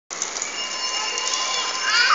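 Steady outdoor background noise with a few thin, steady high tones running through it, and a voice beginning faintly near the end.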